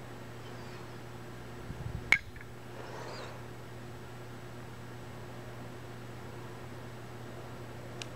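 Quiet handling of a rubber-band loom figure over a steady low hum, with one sharp click a little after two seconds in.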